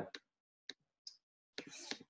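A few faint, separate clicks: three short ticks spread through the first second or so, then a faint rushing sound near the end.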